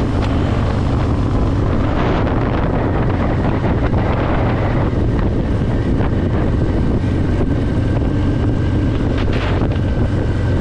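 2020 Harley-Davidson Fat Boy's V-twin, built up to 117 cubic inches with a Screamin' Eagle Stage 4 kit, running at a steady cruising speed, with wind buffeting the microphone.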